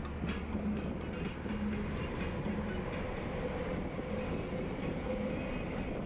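Steady road and engine rumble heard from inside a moving car cruising on a highway.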